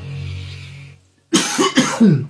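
A held low chord of background music fades away, then a man coughs and clears his throat in two or three loud bursts near the end.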